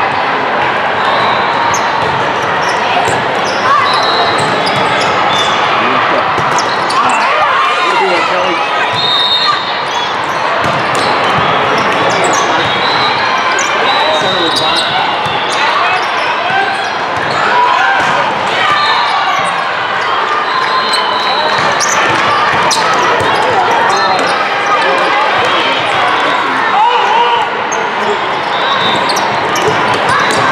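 Indoor volleyball play in a large, echoing hall: the sharp smacks of balls being hit and short high squeaks of shoes on the sport court, over a steady din of many players' and spectators' voices from several courts.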